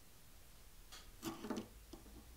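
A blade prying loose binding away from the edge of a guitar fretboard: a short cluster of faint clicks and scrapes about a second in, loudest just past the middle, with one small click near the end.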